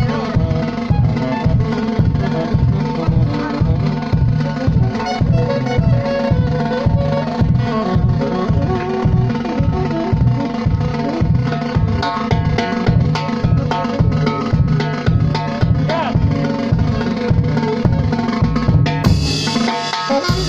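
An orquesta folklórica playing: several saxophones carry the melody over timbales, bass drum and cymbal keeping a steady, even beat.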